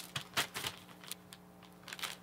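Vinyl record jacket and its plastic outer sleeve being handled: a few short crinkles and light taps, over a faint steady hum.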